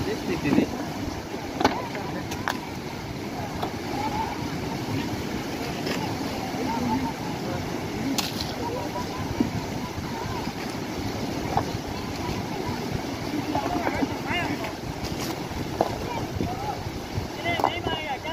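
Steady rushing roar of a fast, churning mountain river in full flow, with a few sharp clacks of stones being knocked together as rocks are moved at the water's edge.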